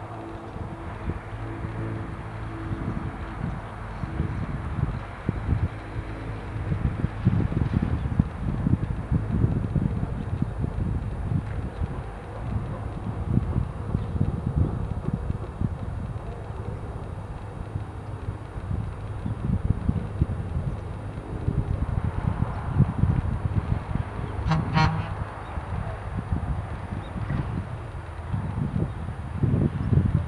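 Wind buffeting the microphone in uneven gusts. A steady low hum runs under it for the first several seconds, and a brief high-pitched sound comes about 25 seconds in.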